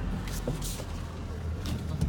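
2006 Ford F-150 running at low speed while it backs up in reverse gear, heard from inside the cab as a steady low engine hum with a couple of light clicks. This is a check of the transmission's reverse, which engages and drives properly.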